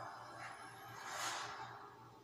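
Movie-trailer soundtrack played faintly from a laptop: a hissing swell that builds to a peak a little over a second in, then fades.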